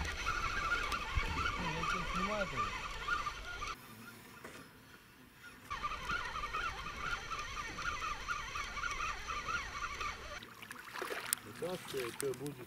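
Spinning reel being cranked as a hooked fish on a bottom line is reeled in, with a steady wavering whir. The sound drops away for about two seconds partway through, then the reeling resumes.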